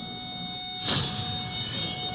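Soundtrack of a TV advertisement played back over the room's speakers: steady high electronic tones are held, with a short swooshing hit about a second in as the ad cuts to a boxing-ring scene.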